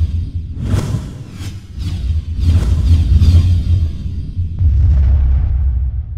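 Cinematic logo-intro sound effects: a series of sweeping whooshes over a deep, steady rumble, then a sudden deep boom about four and a half seconds in that holds and begins to fade.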